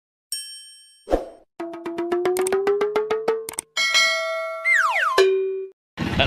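Cartoon-style intro animation sound effects. A bright ding is followed by a pop, then a fast run of about ten clicks a second over a slowly rising tone. Next comes a held chime that slides steeply down in pitch and ends on a short low note.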